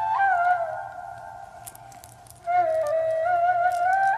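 Background score: a slow solo woodwind melody, flute-like, that fades away about half a second in and comes back about two and a half seconds in.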